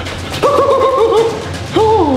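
High-pitched whimpering whines from a person's voice, heard twice: a wavering whine, then a shorter one that rises and falls near the end. A low steady music drone runs beneath.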